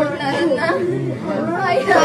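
Speech only: several people talking at once, their voices overlapping.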